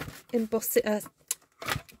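Mostly a woman's voice hesitating ('uh'). About a second and a half in there is a single sharp click as her hand handles the small manual cut-and-emboss machine.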